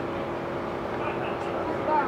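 Indistinct voices of people talking in the background over a steady mechanical hum.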